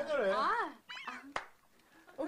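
A person's voice calling out in a sing-song, swooping pitch, then a few short high squeaks and a sharp click about a second and a half in.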